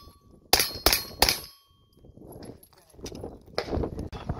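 Three quick shots from a pistol-caliber carbine, about a third of a second apart, with a steel target's faint ring hanging on after them.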